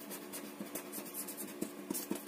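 A marker pen scratching across paper as a word is written by hand, in quick irregular strokes with small taps of the tip.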